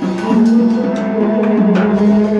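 Free-improvised jazz: a double bass bowed in a long, wavering low tone, with trumpet above it and a few scattered drum strikes.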